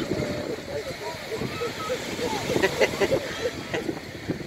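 Indistinct voices in short, scattered fragments, children's and bystanders' chatter, over a steady outdoor hiss of wind and surf.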